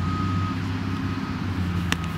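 Steady low mechanical hum with a thin, steady high-pitched tone over it for the first moment, and a single sharp click near the end.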